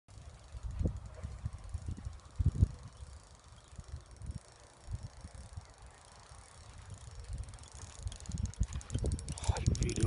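Spinning reel ticking in a fast, dense run of clicks over the last two or three seconds while a large fish is played. Low thumps of wind and handling on the microphone come and go throughout.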